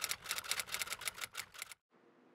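Typewriter sound effect: a rapid run of key strikes, about six a second, stopping near the end, as text is typed onto the screen.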